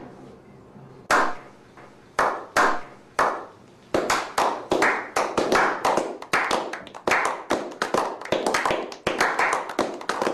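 A slow clap: single hand claps about a second apart, then from about four seconds in more people join and the clapping quickens into scattered applause.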